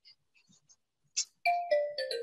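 An electronic notification chime from the video-call software: a few clear tones stepping down in pitch, doorbell-like, starting about a second and a half in after a brief faint click.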